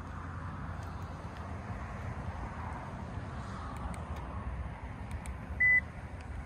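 Steady low background rumble, then a single short high-pitched electronic beep near the end.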